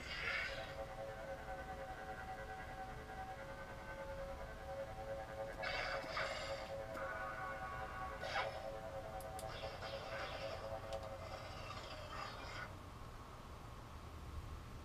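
Lightsaber sound board (TeensySaber V3) playing through the hilt speaker: an ignition sound, then a steady electric hum with several swing whooshes as the blade is moved, and a retraction sound near the end that cuts the hum off.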